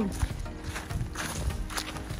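Footsteps of a group of people walking on a dry dirt path: irregular steps and scuffs.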